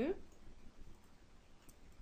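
A few faint computer-mouse clicks over quiet room tone.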